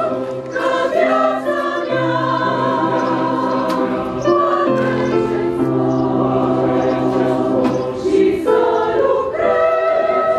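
A choir singing a slow hymn in several parts, holding long sustained notes that move in steps from chord to chord.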